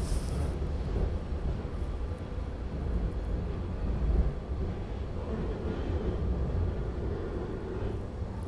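Steady low rumble inside a moving SEPTA Regional Rail electric train car, its wheels running along the track.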